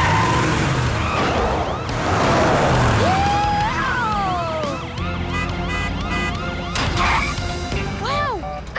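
Cartoon sound effects of a police cruiser speeding up a ramp onto a rolling Ferris wheel: engine and tyre noise with a police siren, over background music. A long rising-then-falling glide sounds near the middle.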